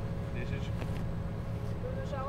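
An engine idling with a steady low rumble, with faint voices in the background.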